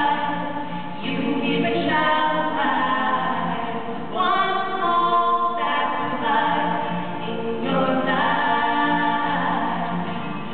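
Two singers singing a song, holding long notes that change pitch every second or two.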